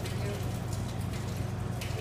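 Hands patting balls of masa dough between the palms to flatten them into pupusas, a run of soft slaps over a steady low hum.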